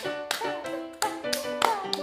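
Hands clapping in a patty-cake clapping game, sharp claps several times a second, over a bright background tune.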